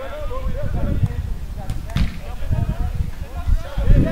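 Players' voices calling out across a football pitch, distant and indistinct, over a low rumble, with a sharp knock about two seconds in.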